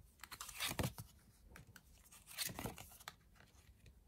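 Tarot cards being handled and laid down onto a spread on a table: two faint bouts of card rustling and sliding, the first about half a second in, the second about two and a half seconds in.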